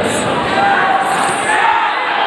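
Spectators shouting and chattering in a large, echoing hall, with a thud right at the start as fighters clash on the mat.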